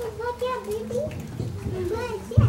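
A young child's high-pitched voice, speaking indistinctly.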